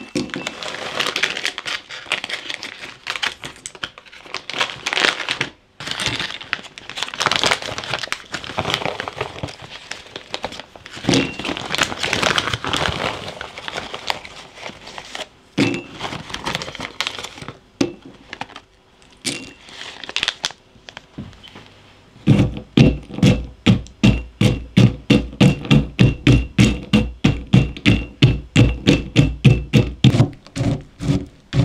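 Plastic bags crinkling and mixed nuts rattling as they are poured into a ceramic mortar. About two-thirds of the way through, a ceramic pestle starts pounding the nuts in a steady run of about four strikes a second, each with a dull thud and a faint ring of the bowl.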